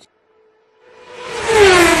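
Sound effect of a fast vehicle rushing past. After a short silence a loud whoosh swells up about a second in, and its engine tone drops in pitch as it goes by.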